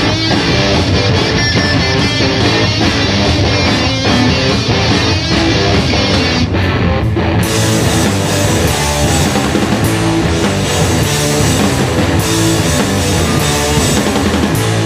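Live rock band playing loudly: distorted electric guitars and drums driving a riff. After a brief drop about six and a half seconds in, the full band comes back in with loud cymbals.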